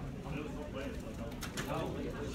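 Indistinct background chatter of several people's voices, steady throughout, with no one voice standing out.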